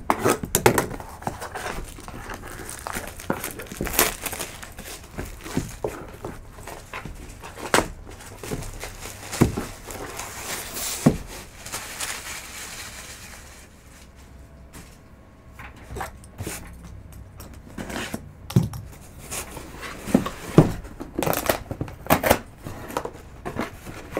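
Cardboard box being opened and handled by hand: scattered knocks and clicks as the box and its flaps are moved, with a longer stretch of crinkling and tearing around the middle as the packing is pulled open.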